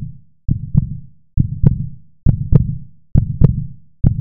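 Heartbeat sound effect: a low double thump, lub-dub, repeating a little under once a second.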